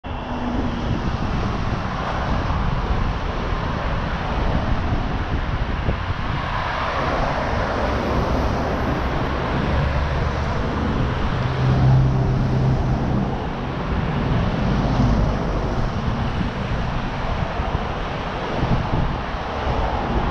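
Street traffic on a multi-lane road: cars driving past with steady tyre and engine noise, swelling as vehicles go by, with wind rumbling on the microphone.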